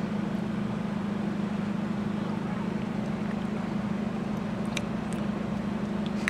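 Steady low hum with a hiss inside a car cabin, as from the car's running engine and air system. A few faint ticks come about five seconds in.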